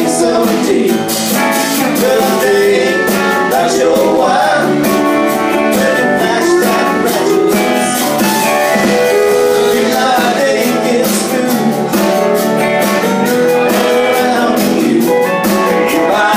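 Live band playing a song: electric and acoustic guitars over a drum kit, with a steady beat of cymbal and snare hits.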